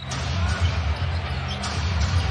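Basketball being dribbled on a hardwood arena floor over steady, low crowd noise.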